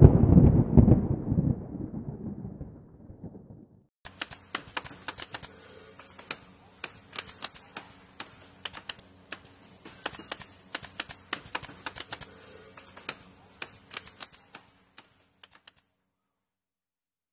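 A logo sound effect: a loud, deep boom right at the start that dies away over about four seconds. Then a typewriter sound effect of sharp, irregular key clacks for about eleven seconds, which stops shortly before the end.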